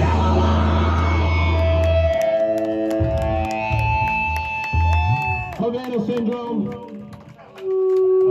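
A distorted heavy-rock band's final chord ringing out, the low bass note cutting off about two seconds in and leaving held guitar tones. Voices follow, and a guitar note is struck again near the end.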